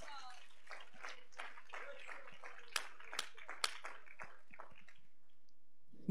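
A church congregation clapping their hands, faint and scattered, with voices murmuring underneath; the claps thin out and stop about five seconds in.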